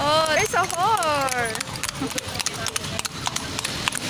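Hooves of a horse pulling a kalesa (horse-drawn carriage) clip-clopping on an asphalt road as it trots past. A high, sliding voice calls out over the first second and a half.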